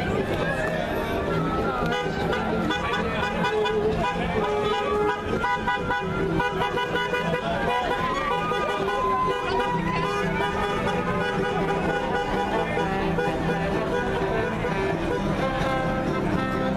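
Band music playing continuously: a melody moving over steady held low notes, with crowd voices mixed in.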